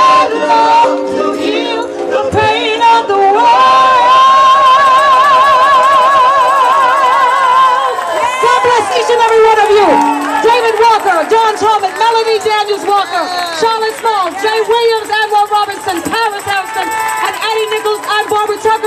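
Several women singing live into microphones, house-gospel style. A long held note with a wide vibrato comes about a third of the way in, followed by overlapping vocal runs and ad-libs from different singers.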